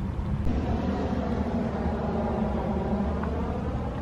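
A steady low rumble with a hum, like a motor vehicle's engine running, continuing unchanged throughout.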